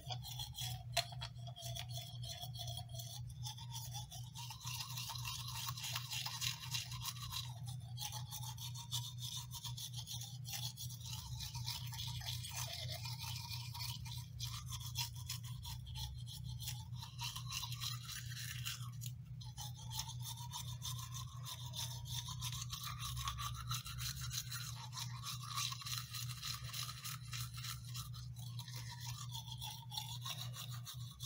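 Teeth being brushed with a toothbrush: rapid, continuous scrubbing strokes of the bristles against the teeth inside the mouth.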